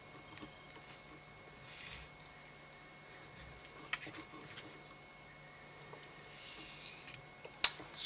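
Faint handling sounds of fly-tying materials and thread being worked by hand at a vise: light rustles and soft clicks, with one sharp click near the end.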